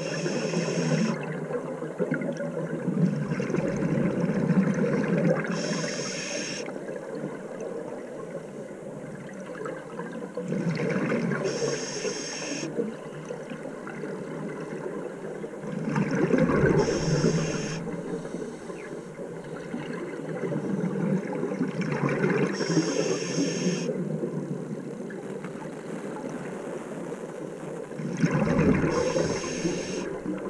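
Scuba regulator breathing underwater: a short hiss on each inhale and a gush of bubbling exhaust on each exhale, repeating about every five to six seconds.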